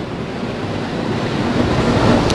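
A rushing noise that grows steadily louder, with no speech in it.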